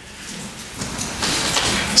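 Faint, indistinct voices of congregation members murmuring answers from the pews, off-microphone, over a hiss of room noise that grows louder through the two seconds.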